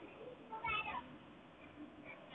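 A faint, short, high-pitched cry with a falling pitch, lasting under half a second, just over half a second in.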